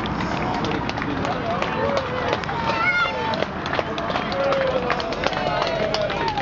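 Footsteps of a group of soldiers carrying loaded rucksacks walking past close by, with a patter of scattered sharp clicks. Onlookers' voices call out and cheer briefly, about halfway through and again later.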